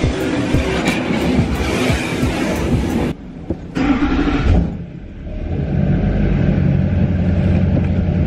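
Automatic car wash heard from inside a truck cab: water spray pouring on the windshield and body for about three seconds, cutting off suddenly. After a brief lull a steady low drone of the dryer blowers sets in as air pushes the water off the glass.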